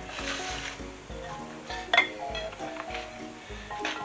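Upbeat background music with a steady beat, and a single sharp clink of a dish or plate being set down or knocked about halfway through.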